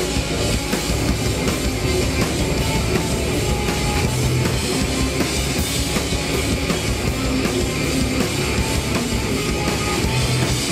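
Live grunge rock band playing loud and distorted: electric guitars, bass and a pounding drum kit in an instrumental passage with no vocals.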